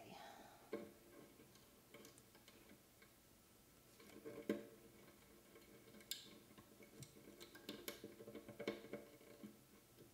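Faint handling noise: scattered small ticks and taps as fingers pull a looped gut harp string tight and work it at a lyre's wooden anchor bar.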